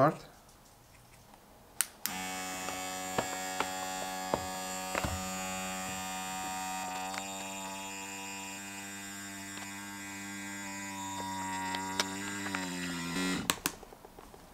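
Small USB electric vacuum pump running steadily with an even motor hum, drawing the air out of a filament storage vacuum bag through its valve. It starts just after a click about two seconds in, and its pitch dips slightly just before it stops near the end.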